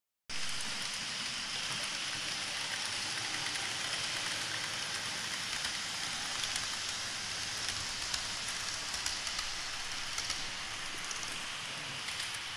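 Electric model trains running on a layout: a steady rushing whir of motors and wheels on the rails, with faint scattered clicks in the second half.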